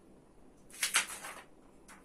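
Soft rustling handling noise from objects being moved on a table, mostly around a second in, with a short scuff near the end.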